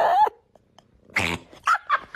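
A domestic cat gives a short growl, then after a pause a sharp hiss about a second in. A few short bursts of a person's laughter follow near the end.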